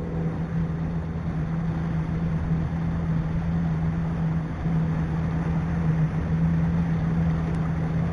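Small boat's motor running at a steady speed while cruising, a constant hum over an even wash of noise.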